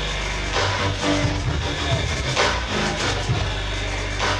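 Dance music with a heavy bass line and a steady beat, played loud over a club's PA speakers.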